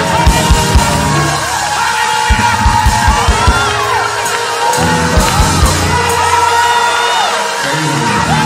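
Gospel praise-break music: organ holding a long high note over quick runs of bass drum hits, with voices whooping and shouting over it.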